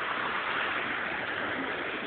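Creek water running steadily over stones, an even rushing hiss.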